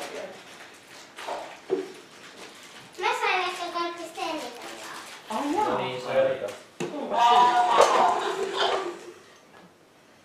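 A young child's high voice in three short stretches of talking or calling out, with a few light knocks between them.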